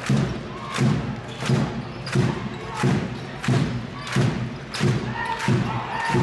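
Crowd drum in the fan section beaten at a steady pace, about three beats every two seconds, with crowd voices chanting over it near the end.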